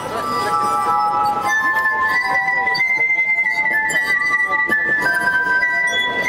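Glass harp: a set of water-tuned wine glasses sounding long, pure, ringing notes as fingertips rub their rims. Several notes are held together in chords while the melody moves slowly, with a high note sustained through the latter part.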